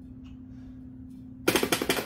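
Metal transom-wheel bracket rattling in its prototype single-pin slotted tube mount: a quick burst of metallic clattering about a second and a half in. The rattle comes from the loose fit of the pin in the slot.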